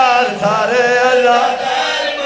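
A zakir's chanted recitation: one man's voice, amplified through a microphone, holding long melodic phrases.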